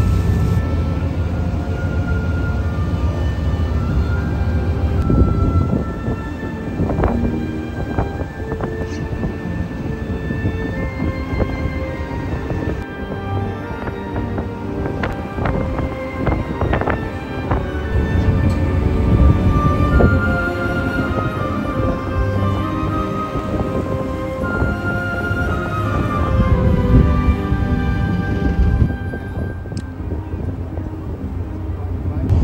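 Background music with a melody, over a steady low rumble.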